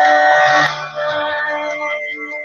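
Contemporary worship song playing: a sung note held for a moment ends about two-thirds of a second in, and the instrumental accompaniment carries on with steady sustained notes.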